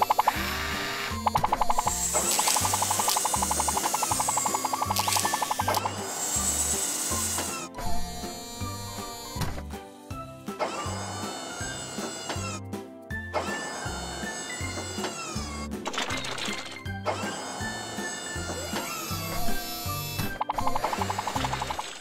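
Background music with a repeating bass line, over which a cartoon motor-whirring effect for the toy crane's machinery starts and stops about five times, each whine gliding up at the start and down at the end.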